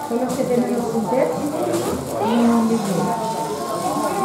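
Indistinct voices talking, with one longer drawn-out vocal sound a little past the middle.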